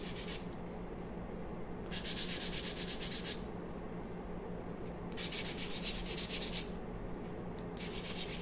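A handheld block of 220-grit sandpaper is rubbed rapidly back and forth along the primed MDF edges of a small plaque. The sanding comes in bursts of about a second and a half with pauses between, the last starting near the end.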